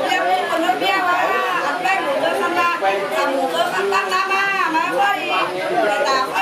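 Several women's voices at once, a continuous stream of overlapping talk and voice with no pause.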